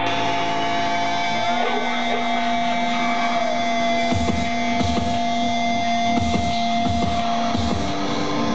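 Live band playing loud droning noise through the PA: several held amplified tones and a few sliding pitches over a dense noisy wash. Low thuds come in about four seconds in.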